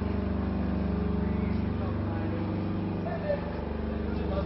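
A steady, low engine hum that holds evenly throughout.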